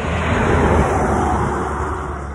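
A semi truck pulling empty log trailers passing on the road: a rushing swell of engine and tyre noise that peaks a little under a second in and then fades away.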